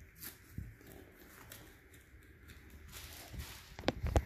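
Faint handling noise: soft knocks and rustles as sneakers are moved and set down on a board, with a quick cluster of clicks near the end.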